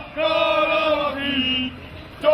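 A group of voices chanting a sung phrase in unison: one held line of about a second and a half that steps down in pitch near its end.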